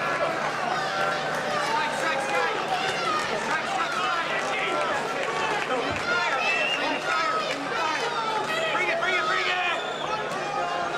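Crowd of spectators shouting and yelling over one another, many raised voices at once, at a steady level.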